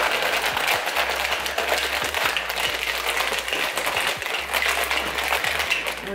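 Plastic shaker bottle shaken hard and continuously, a fast dense rattle, mixing a powdered drink into water.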